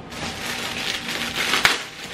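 Clear plastic packaging bag crinkling and rustling as it is handled and pulled open, with one sharp click about one and a half seconds in.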